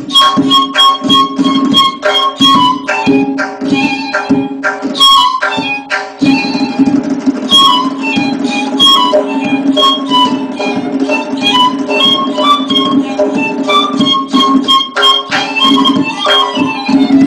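Persian ney (end-blown reed flute) playing a melody in the dastgah Chahargah, accompanied by a tombak (goblet drum) striking a steady run of hand strokes.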